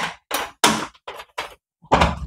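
Metal lever handle and latch of a glass balcony door being worked by hand: a series of short clicks and clunks as the door is unlocked and opened.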